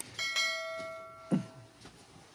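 A metal object knocked once, ringing like a small bell with a clear, bell-like tone that dies away over about a second and a half.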